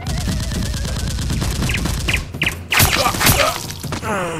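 Gunfire sound effect: a rapid machine-gun rattle for about two seconds, then a few louder shots near the end.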